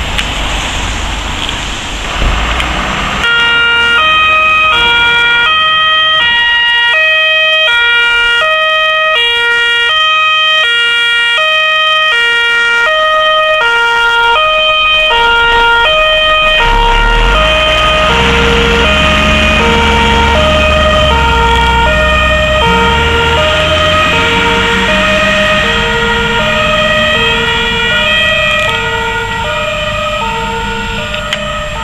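Dutch fire engine's two-tone siren, starting about three seconds in and switching between a high and a low pitch about twice a second. From about halfway the truck's engine rumbles loudly under the siren as it passes close by.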